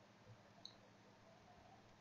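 Near silence, with a couple of faint computer mouse clicks in the first second.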